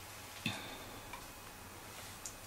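A single light, sharp tap about half a second in, with a faint high ring after it and a much fainter tick a little later, over quiet room tone.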